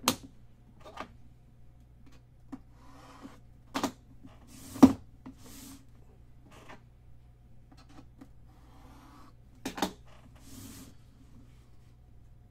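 Sharp clicks and knocks from hands handling a metal-framed card case with latches, the loudest about five seconds in and a quick double click near ten seconds, with a few soft sliding swishes between.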